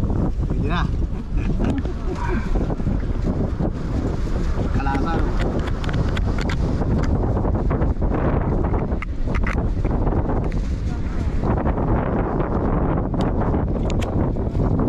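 Wind buffeting the microphone in a steady, loud rumble, with snatches of voices underneath.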